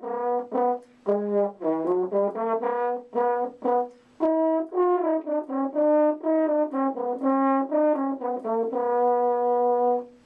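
A solo French horn playing a melody of short, separate notes, with brief pauses about one and four seconds in, and ending on a long held note near the end.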